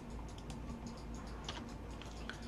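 Faint, scattered clicking of a computer keyboard and mouse, over a low steady hum.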